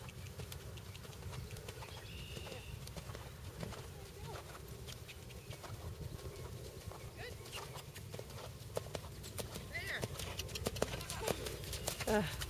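Hoofbeats of a ridden horse moving over a sand arena, faint at first and growing louder and closer near the end.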